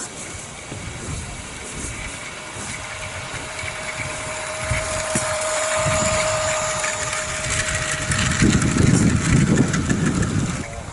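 Miniature garden-railway train running along the track, with a steady mid-pitched hum for most of the time and a louder low rumble in the last two seconds.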